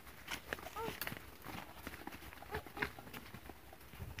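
Footsteps crunching and rustling through dry leaves and brush on a forest path: a faint, irregular run of crackles and snaps.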